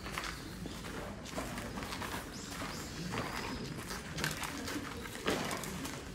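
Outdoor ambience with a faint bird call about two to three seconds in, over scattered light clicks and knocks.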